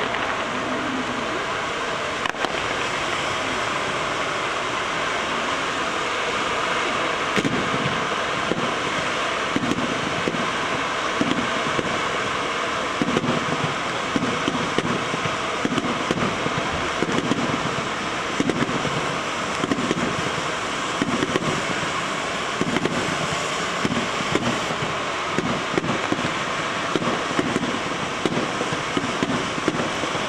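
Fireworks display: a continuous hissing, crackling fountain of fire with, from about seven seconds in, a rapid run of small shells launching and bursting, several bangs every second or two.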